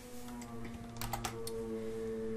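Computer keyboard typing: a quick run of a few keystrokes about a second in, over a faint steady hum.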